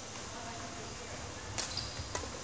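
Badminton racket striking a shuttlecock once, a sharp crack about one and a half seconds in that rings briefly in the hall. A short shoe squeak on the wooden court floor follows.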